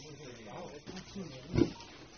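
Indistinct voices of people talking in Spanish in the background, with a short loud bump about one and a half seconds in.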